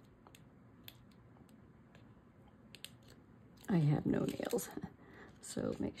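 Faint ticks and crackles of paper being handled as the backing liner is pulled off score tape, a double-sided adhesive tape. A short, louder stretch of voice comes about four seconds in.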